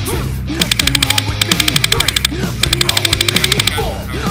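Heavy rock music with two bursts of rapid fire over it, about twelve sharp shots a second, from an airsoft gun on full auto. The first burst lasts about a second and a half, the second about a second.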